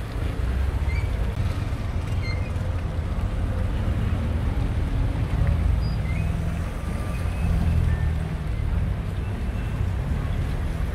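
Steady low rumble of street traffic and wind on the microphone.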